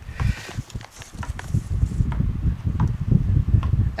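Paper and a padded mailer envelope rustling and crinkling as a folded note is handled, with scattered small clicks over an uneven low rumble.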